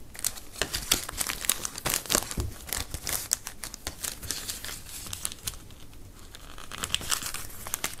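Clear plastic sticker bag being peeled open and handled, the thin plastic crinkling in a rapid run of small crackles that thins out about halfway through.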